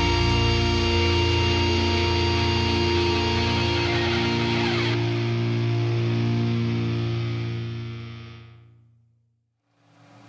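The last chord of a hard rock song, distorted electric guitar and bass held and ringing, fading out to silence about nine seconds in.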